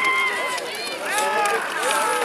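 Several men shouting and calling over one another in excited yells, some calls drawn out and others short, with faint clicking underneath.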